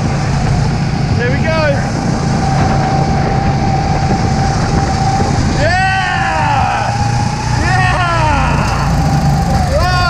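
Go-kart engine running at speed: a steady whine over a low rumble, heard from on board. About four brief squeals that rise and fall in pitch break in over it.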